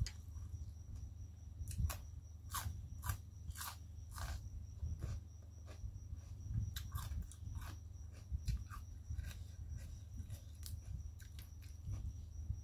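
Close-up mouth sounds of a person chewing crunchy spicy papaya salad (tam sua pa) into a clip-on microphone: irregular wet crunches and crackles, a cluster of louder ones a few seconds in and again past the middle, over a steady low hum.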